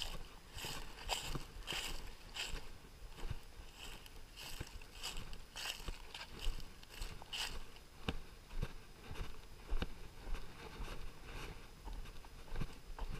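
Footsteps crunching through dry fallen leaves and dead grass at a steady walking pace, a little under two steps a second; in the later seconds the steps become sharper scuffs on bare dirt and gravel.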